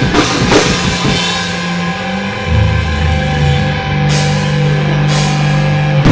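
Live metalcore band playing: guitars and bass hold low sustained chords while the drum kit keeps time, with cymbal crashes near the start and twice more in the second half.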